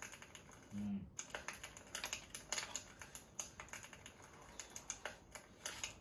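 Chopsticks clicking and tapping irregularly against a metal camping pot and bowl while noodles are being eaten, with a short hummed "mm" just before a second in.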